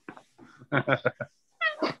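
People laughing: a run of quick short laughs about a second in, then another laugh near the end.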